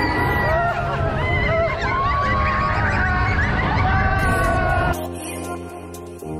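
Roller coaster riders yelling and whooping over the low rumble of a mine-train coaster. About five seconds in it cuts suddenly to quiet background music.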